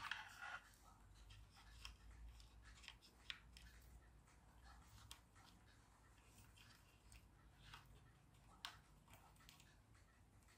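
Near silence with a few faint, scattered clicks and rubs of soft plastic being handled: rubber suction cups being worked into the holes of a plastic thermometer body.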